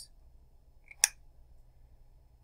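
Quiet room with a single sharp click about a second in, from a felt-tip marker being handled after writing.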